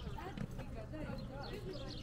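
Indistinct background chatter of several people's voices, over a low steady hum.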